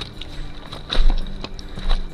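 Hiking boots stepping on a rocky dirt trail and trekking poles tapping, as a backpacker walks past close to the microphone. Heavy footfalls land about a second in and again near the end.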